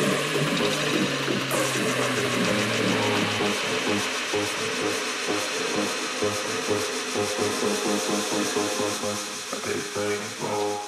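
Tech house DJ mix in a breakdown. The bass line drops out about three seconds in, leaving a noise layer over a repeating mid-range synth pattern with no kick drum.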